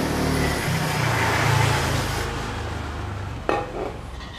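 Aerosol brake cleaner spraying in a steady hiss onto a motorcycle's front brake caliper to flush out brake-pad dust, dying away about two seconds in. A short click comes near the end.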